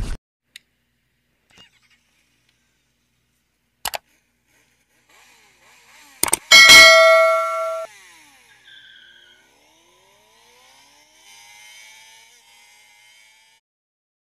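Edited-in sound effects for a subscribe-button animation: a few sharp mouse clicks, a quick double click, then a loud bell-like ding that rings for about a second. Faint falling whooshes and a soft high shimmer trail off near the end.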